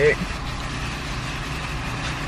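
Steady low rumble and hiss of a car's interior, unchanging in level.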